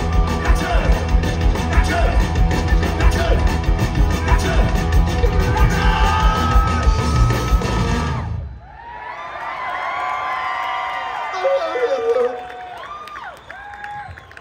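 Punk rock band playing loud and live with electric guitars and a steady drum beat, the song ending abruptly about eight seconds in. The crowd then cheers, yells and whoops.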